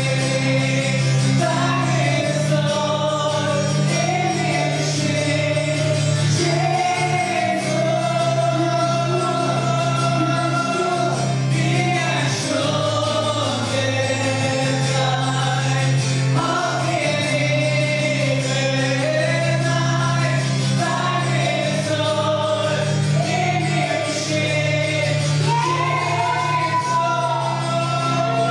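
Live worship song: a man sings lead into a microphone with acoustic guitar, the congregation singing along, over steady low bass notes.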